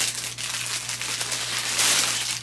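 Clear plastic garment bag crinkling and rustling as it is handled and opened, louder near the end.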